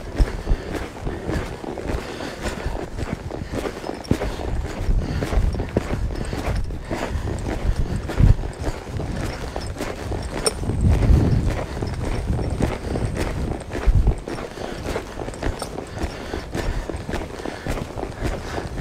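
A horse's hooves striking arena dirt at a lope, a steady run of muffled hoofbeats with a few heavier low thumps along the way.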